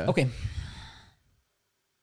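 A man's voice ends a word, then a short breathy laugh that fades out within about a second.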